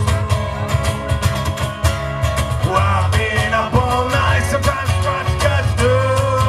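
Live street-folk band playing a fast song: hard-strummed acoustic guitars over a strong bass and drums.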